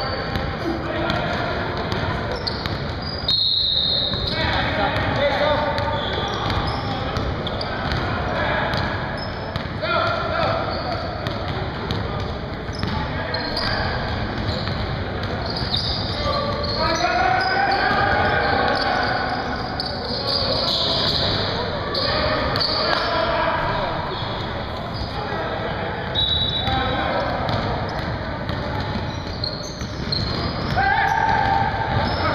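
Basketball being dribbled on a hardwood gym floor during play, with players' voices and calls ringing through the hall.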